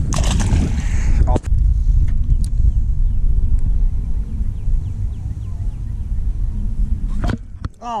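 Wind buffeting an action camera's microphone: a steady low rumble, with a couple of sharp clicks about a second in and near the end.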